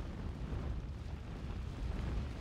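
Steady, heavy low rumble from a string of RDX shaped charges going off across a steel tower's lower columns, cutting them. No single sharp report stands out.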